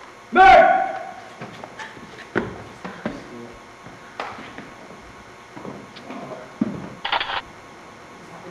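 A loud, short shout from a voice about half a second in, followed by scattered knocks and thuds of boots on a wooden staircase, and a brief second burst of voice near the end.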